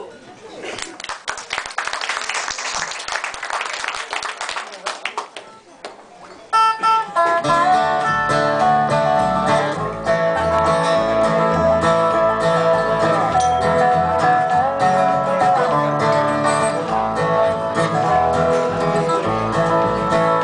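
An audience applauds for about six seconds. Then a string band starts an instrumental intro, with acoustic guitar, fiddle, upright double bass and dobro playing a country-folk tune.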